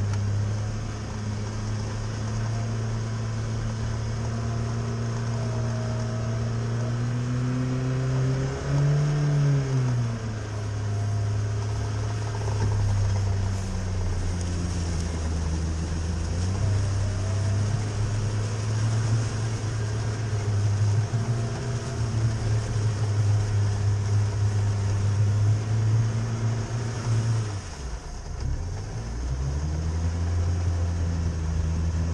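Chevrolet Niva's four-cylinder engine running under load at steady revs as the car works in a deep, icy puddle. The revs rise and fall briefly about nine seconds in, and drop and pick up again near the end.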